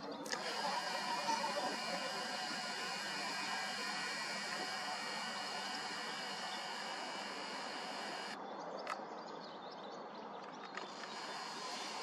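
Nikon Coolpix P1000's built-in zoom motor running steadily as the lens zooms out from far telephoto, stopping abruptly about eight seconds in; faint outdoor background after it.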